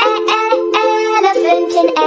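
A child's voice singing a phonics nursery song over light music, the notes changing every few tenths of a second.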